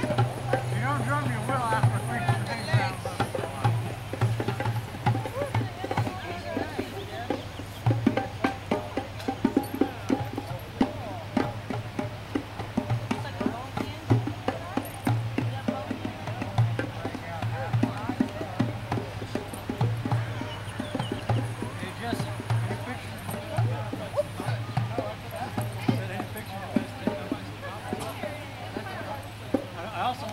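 Hand drums such as djembes played by a group in a loose, ongoing rhythm of many strikes with deep bass thumps, with people's voices chatting over them.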